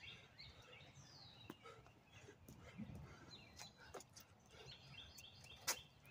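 Faint chirping and calling of small birds, with one sharp tap near the end that is the loudest sound.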